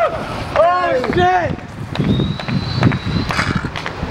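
Voices calling out with drawn-out, rising-and-falling pitch in the first second and a half, then the rolling of kick-scooter wheels over stone paving: a low rumble with sharp ticks and a thin, steady high whine, with wind on the microphone.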